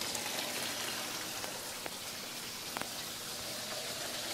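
Water trickling and splattering from PVC inlet pipes into aquaponics grow beds: a steady patter with a few faint ticks in the middle.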